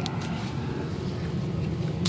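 Steady low rumble of an idling vehicle heard from inside its cab, with a few brief handling clicks at the start.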